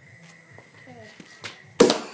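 Homemade compressed-air gun firing with one sudden loud blast near the end, as its back end blows off under the pressure.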